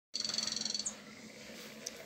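A rapid, high-pitched trill of about twenty pulses a second, lasting under a second and ending on a short rising note, like a small bird's. After it there is faint room tone with a low hum.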